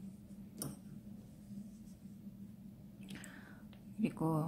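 Faint rustling of a crocheted vest panel being handled, with a brief tick about half a second in and a soft swish near the end, over a steady low hum.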